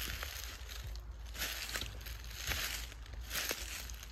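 Footsteps crunching on dry forest floor, one step roughly every second.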